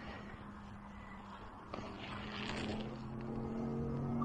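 Metal detector sounding a steady low-pitched hum, the low tone such a detector gives over a low-conductivity target. It grows fuller and louder in the last second or so.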